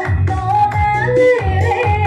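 A woman singing a Rijoq song into a microphone, holding notes that bend up and down in pitch, over electronic keyboard accompaniment with a low beat about twice a second.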